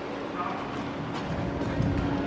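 Indoor background noise with a steady low hum and faint, distant voices.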